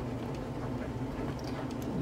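A steady low hum under faint background noise, with no distinct event standing out.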